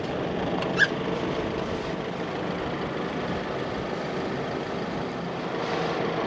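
Isuzu D-Max pickup's engine idling steadily, with one brief sharp sound just under a second in.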